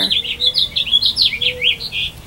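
A small songbird singing a fast run of short, high chirps that mostly slur downward.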